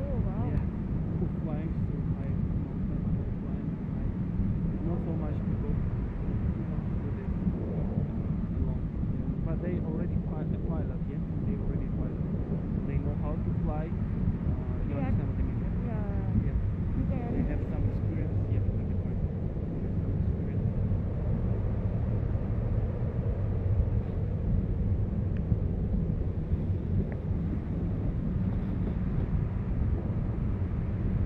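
Wind rushing over the camera microphone during a tandem paraglider flight: a steady low rumble, with muffled voices through the middle part.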